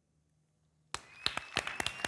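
Studio applause breaking out suddenly about a second in, many hands clapping, with a long high whistle over it.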